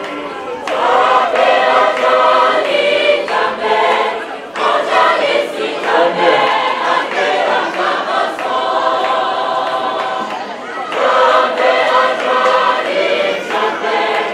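Group of voices singing a church hymn together in long held notes, phrase after phrase, with short breaks between phrases.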